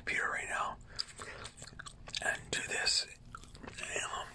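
Gum chewing close to the microphone, with short wet clicks and smacks, mixed with soft whispering.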